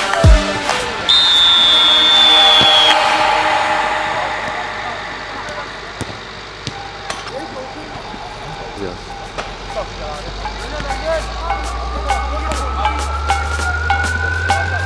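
Electronic background music: a heavy beat at the start that falls away to a quieter stretch, then a low swell and a steadily rising tone building up toward the end.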